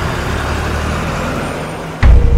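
Bus engine running, a steady noise that slowly fades and then cuts off suddenly.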